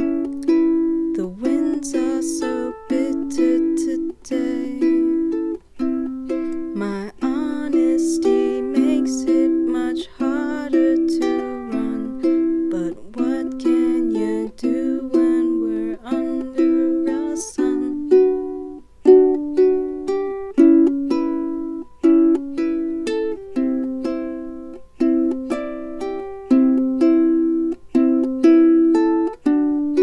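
Ukulele playing plucked chords in a steady rhythm: an instrumental passage of an indie folk song, with no lead vocal.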